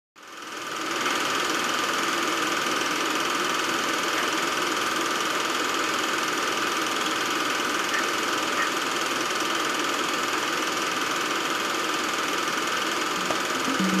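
A steady mechanical whirr that fades in over the first second and then runs evenly without change.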